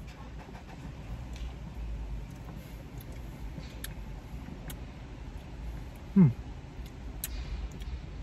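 Soft gulps and small clicks from plastic soda bottles being drunk from and handled in a quiet car cabin with a low hum. About six seconds in comes a man's short "hmm" that falls in pitch, the loudest sound, as he tastes the drink.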